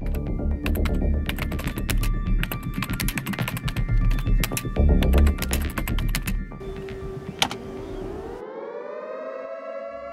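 Rapid computer keyboard typing, dense quick key clicks over loud background music, for the first six seconds or so. Then a steady electronic tone sounds, and in the last two seconds a rising tone sweeps up and holds.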